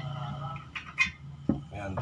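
Two sharp knocks about half a second apart as a tubular steel bar is pushed into place against the wooden frame of a homemade screen-printing exposure table, over a steady low hum.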